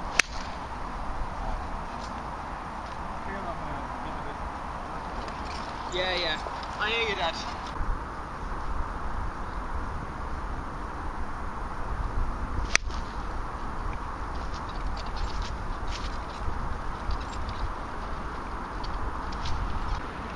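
A golf club strikes a ball off the tee with one sharp click just after the start. About twelve seconds later comes a second sharp click as an iron hits the ball from the fairway.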